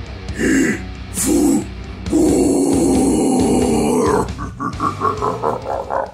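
A man's short laughs, then a long, rough, guttural death-metal growl of about two seconds, breaking into a rapid pulsing growl near the end, with music underneath.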